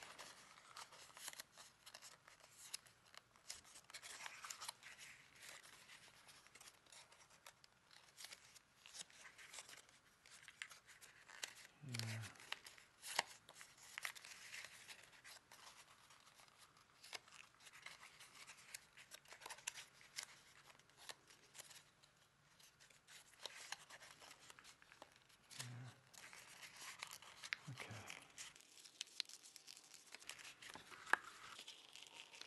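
Faint, irregular crackling and rustling of thick folded paper as it is pressed, creased and twisted by hand into a tight spiral fold.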